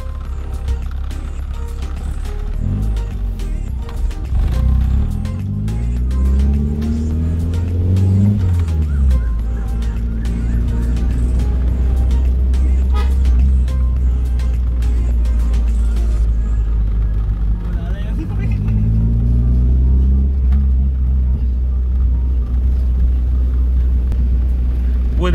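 Car engine and road drone heard from inside the cabin while driving slowly. The engine's pitch rises for several seconds and then drops about nine seconds in, and it rises again briefly later on.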